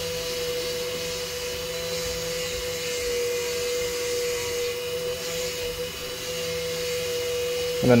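Dremel rotary tool running at a steady speed, its 600-grit diamond bit grinding a small agate to level a flat face: a steady motor whine over a hiss of grinding.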